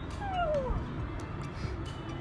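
A small long-haired dog gives one short, falling whine, begging for its owner's food, over background music.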